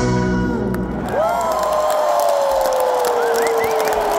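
The rock band's final held notes end about a second in, and a large arena crowd cheers and applauds, with one long falling 'woo' close by and a few short whistles near the end.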